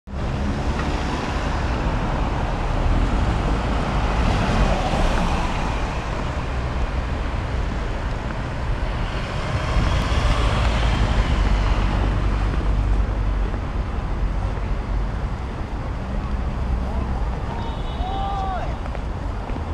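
Steady outdoor city traffic noise with a heavy low rumble, swelling a little about four seconds in and again around ten seconds in.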